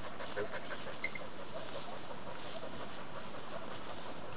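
A pointer panting, breath after breath, with a small sharp click about a second in.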